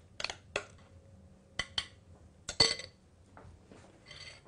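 A spatula knocking and scraping against a glass mixing bowl as cake batter is poured out into a bundt pan: a handful of short, sharp clinks, the loudest about two and a half seconds in with a brief ring.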